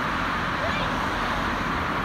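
Steady road traffic noise from cars passing on a busy city street.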